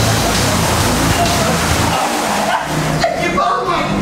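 A mass of water balloons sliding and sloshing across the floor of a moving truck's cargo box, a dense rushing noise, over background music with a steady bass line; voices shout briefly about three seconds in.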